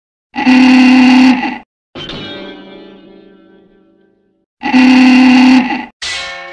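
Two very loud, harsh sustained blasts, each about a second long, one near the start and one near the end, with a plucked guitar-like note ringing out and fading between them. These are edited-in sound effects.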